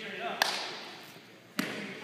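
Two sharp basketball bounces on a hardwood gym floor, about a second apart, each ringing briefly and echoing in the large hall.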